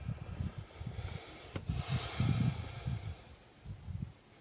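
Light wind rumbling unevenly on the microphone, with a single click about one and a half seconds in followed by a soft hiss.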